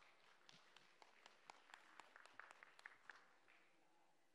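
Faint, scattered applause from a small audience: a few sparse hand claps, starting about half a second in and dying out just after three seconds.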